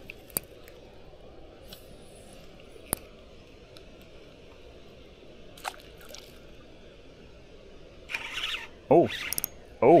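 Quiet lakeside background broken by a few single sharp clicks as a spinning reel is worked. Near the end there is a brief rush of noise, then a man's excited shouts of 'oh' as a bluegill takes the bait.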